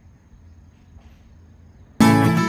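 Faint ambience: a steady high-pitched insect trill over a low hum.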